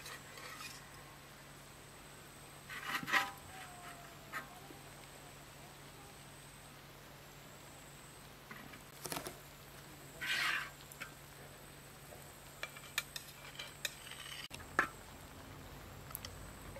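Metal spatula scraping grilled eggplant halves off a pan and setting them onto a glazed ceramic plate: a handful of short, scattered scrapes and light clinks.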